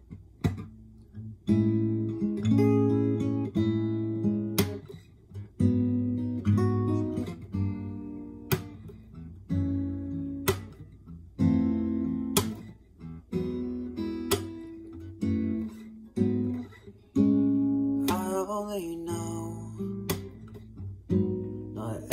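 Acoustic guitar playing a strummed chord intro: chords struck roughly every second or two, each left ringing.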